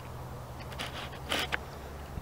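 Gray horse being ridden at a slow gait through soft arena sand, over a steady low rumble, with two short breathy noises, the louder one a little past halfway.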